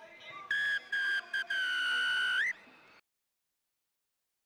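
Referee's whistle: three short blasts, then one long blast of about a second that rises in pitch as it ends, the signal for full time.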